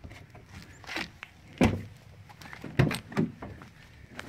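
A few short, sharp knocks or clicks, about four, spaced irregularly over low background noise.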